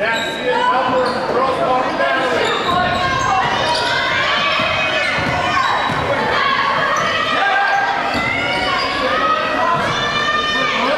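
A basketball bouncing on a hardwood gym floor as it is dribbled, amid players' and spectators' voices carrying through a large gymnasium.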